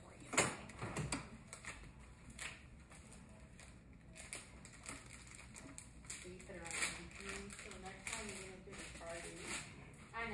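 Crinkling and clicking of a plastic medical supply package being handled and opened, in irregular short crackles, with one sharp click about half a second in as the loudest sound.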